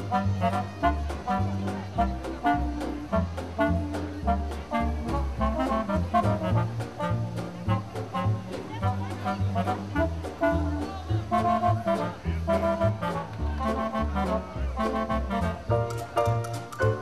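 Upbeat swing-style music with brass and a steady beat.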